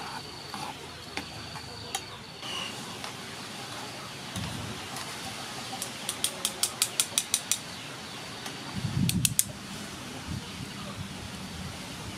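Metal kitchen tongs clicking against a wire-mesh strainer and a pan as broccoli is scooped out of hot water: a quick run of about eight light taps, then a second short cluster of clicks over a dull low sound.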